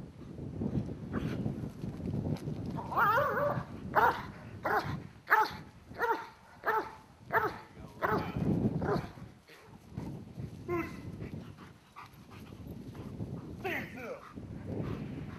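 Belgian Malinois police dog barking, a run of about seven barks roughly one every two-thirds of a second.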